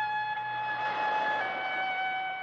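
Film score: a violin holding long high notes, stepping down to a slightly lower note about a second and a half in.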